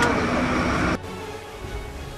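Busy street ambience with voices and traffic noise that cuts off abruptly about halfway through, leaving quieter background music.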